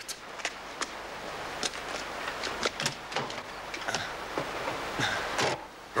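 Scattered clicks and knocks of a man walking to a parked car and getting in, car door and handling sounds, over a steady background hiss.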